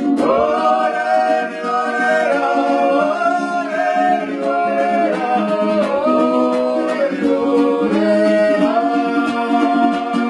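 A song sung with long held, sliding notes over a steady low held note, with little or no instrumental accompaniment.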